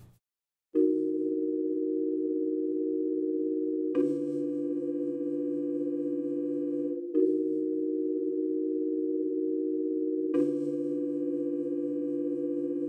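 Sustained electronic synthesizer chords, the instrumental intro of a hip-hop track. They begin about a second in, after a moment of silence, and a new held chord is struck about every three seconds, four chords in all.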